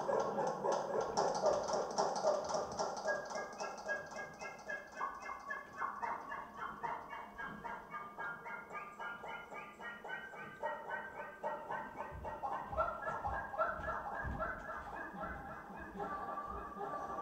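Electronic sound score made from recordings of the audience, algorithmically altered and played back: a rapid stutter of short repeated pitched fragments, with a high pattern that steps upward for several seconds in the middle. Low thuds come in near the end.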